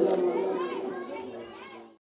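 The last sung note of a man's naat recitation over a PA system dying away, with faint voices of children and other listeners in the background; the whole sound fades out toward the end.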